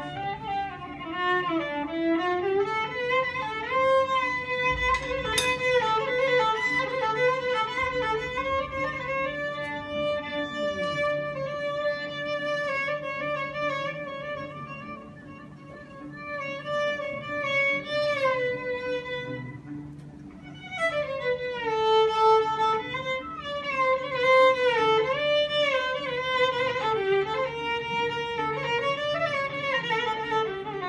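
Solo violin improvising Eastern (Arabic) taqasim: a single melodic line with slides between notes and vibrato. It grows quieter partway through, then swells up again after about twenty seconds.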